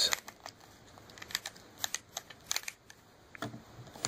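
Scattered light clicks and taps of hands handling a plastic S.H. MonsterArts King Kong action figure, about ten small ticks spread irregularly over a few seconds.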